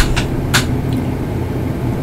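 Steady low background rumble, with two short clicks about half a second apart near the start.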